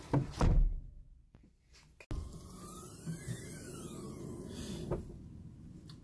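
A car's rear liftgate pulled down and shut with a loud thud about half a second in. A single sharp click comes just before the end, as the liftgate is opened again.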